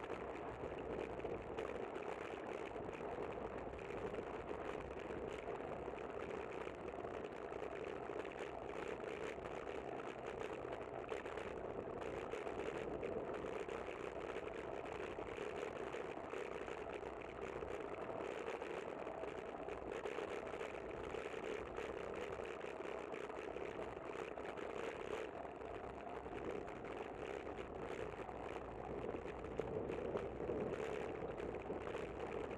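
Steady wind and rolling noise of a bicycle ride, mixed with the hum of motor traffic on the roadway alongside.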